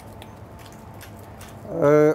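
Faint, scattered crackle of a hand-twisted salt mill grinding Himalayan salt, over a steady low hum of kitchen room noise. A man starts speaking near the end.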